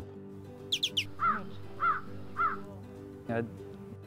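A bird calls three times, about half a second apart, just after three quick high chirps, over soft background music.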